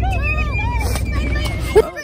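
Indistinct voices talking over a steady low rumble, which stops abruptly with a short knock near the end.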